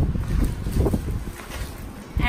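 Low rumbling handling noise on a phone microphone as it is moved, with a few faint rustles and knocks, growing quieter about halfway through.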